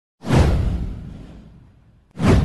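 A whoosh sound effect with a deep low rumble: it swells in suddenly about a quarter of a second in, then fades away over a second and a half.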